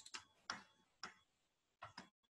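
Near silence with four faint, sharp clicks about half a second apart, from someone working a computer's mouse or keyboard.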